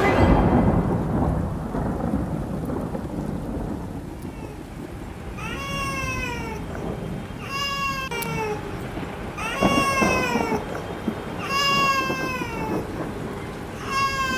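A loud rumble of thunder with rain opens, dying away over the first few seconds. About five seconds in, a baby starts crying in repeated wails, about one every two seconds, each falling in pitch.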